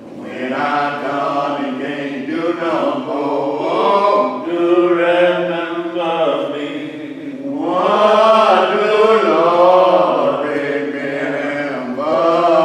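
Voices singing a slow hymn, holding long drawn-out notes that glide from one pitch to the next.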